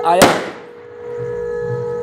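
A single firecracker bang about a quarter second in, the loudest sound, fading away over half a second. Under it a conch shell is blown in one long steady note.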